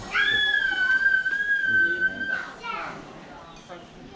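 A child's high-pitched squeal, held steady for about two seconds and sliding down as it ends.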